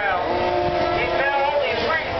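Several radio-controlled Formula 1 cars' electric motors whining at once, each pitch rising and falling as the cars accelerate and brake around the track.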